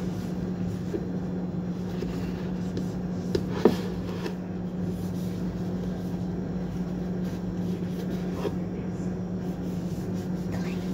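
A steady low hum runs throughout, with a few faint knocks and a short, sharp sound about three and a half seconds in.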